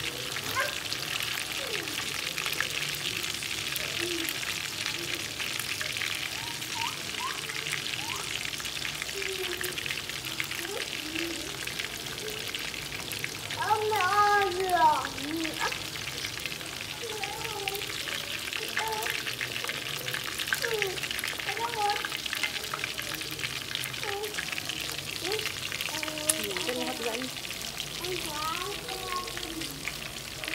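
Catfish pieces frying in hot oil in a wok: a steady sizzle with small crackles and spits throughout. Voices talk faintly in the background, one rising louder for a moment about halfway through.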